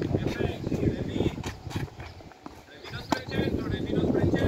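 Tennis balls struck by a racket and bouncing on a clay court, with a sharp racket hit about three seconds in. Voices are heard throughout.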